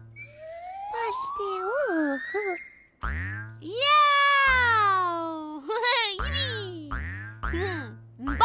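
Cartoon boing sound effects for a large bouncing ball: a long rising glide first, then a run of springy thuds, each one sliding down in pitch.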